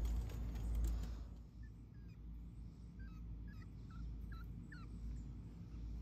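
A string of short, high squeaky calls from an animal, about eight to ten of them over a few seconds, over a low wind-like rumble. A louder rustling noise stops about a second in.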